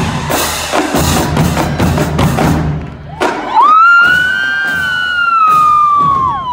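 Marching drumline playing snare, tenor and bass drums with cymbals in a fast rhythm, breaking off about three seconds in. A long high-pitched tone then takes over: it rises quickly and slowly sinks in pitch, louder than the drums.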